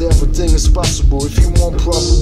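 Hip hop track: a heavy bass beat with drum hits and a rapped vocal line over it.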